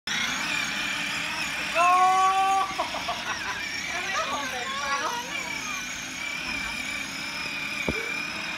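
Electric motor of a battery-powered ride-on toy go-kart whining steadily as it drives over dirt. A loud held voice-like call comes just under two seconds in, followed by voices.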